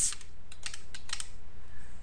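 Computer keyboard keys tapped in a quick run of separate clicks, typing a string of digits and Enter presses into a calculator emulator's data list.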